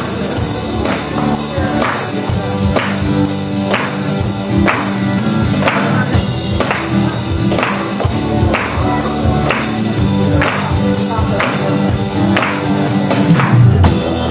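Live band playing an instrumental intro on acoustic guitar and electric bass, with a sharp percussion hit on each beat, about once a second.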